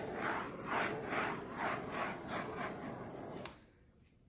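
Handheld butane torch flame hissing as it is swept back and forth over wet epoxy resin to pop surface bubbles. It swells and fades about twice a second, then cuts off suddenly with a click near the end.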